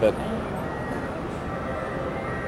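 Steady background din of a large indoor exhibition hall, an even noise with no distinct events, after a single spoken word at the start.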